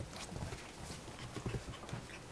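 Toy poodle puppies playing and scuffling on soft bedding: irregular soft thumps and light scrabbling, with two heavier thumps about half a second and a second and a half in.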